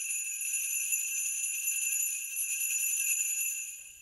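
Sleigh bells jingling steadily in a continuous bright shimmer, as of an approaching horse-drawn sleigh, fading out near the end.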